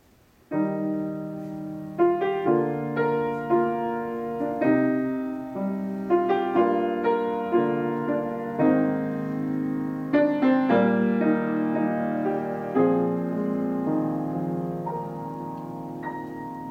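A 1997 Baldwin 6'3" Model L grand piano being played, starting suddenly about half a second in: a piece of held, ringing chords under a melody, with new notes landing roughly twice a second.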